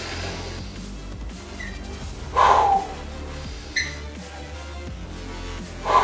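Background music with a steady low beat. Over it, a man breathes out hard twice, about two and a half seconds in and again at the end, on the lifting phase of lying triceps extensions.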